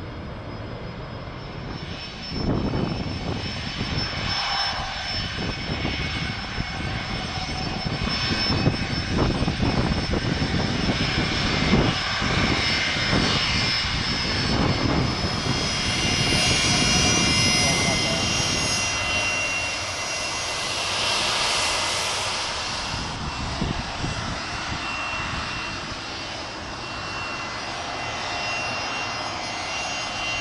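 Jet airliner engines running: a steady rumble, then a high turbofan whine that swells through the middle and eases off toward the end. The whine comes from a Fokker 100's Rolls-Royce Tay engines as the jet moves along the runway.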